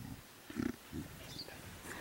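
Mountain gorilla giving two short, low grunts about half a second apart.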